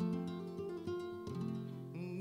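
Flamenco guitar playing a short passage of plucked notes, with low notes held and ringing underneath.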